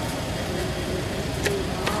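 Steady outdoor background noise, like distant traffic, with two brief clicks about a second and a half in.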